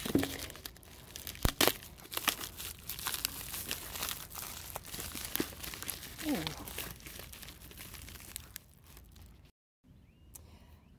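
Plastic bubble-lined mailer crinkling and rustling as it is torn open and handled, a dense run of irregular crackles.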